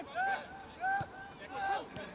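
Footballers shouting short calls to each other across the pitch, three brief shouts in quick succession, with a single short thump about a second in.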